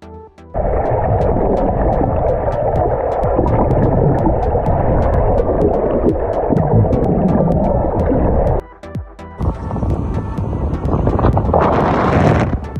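Electronic dance music with a steady beat over a loud, muffled rushing of water from an underwater camera beside a swimmer. About nine seconds in the rushing breaks off, and wind buffeting the microphone takes over.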